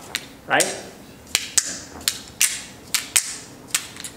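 Demonstration go stones clicking against each other in the hand, about half a dozen sharp, irregularly spaced clicks.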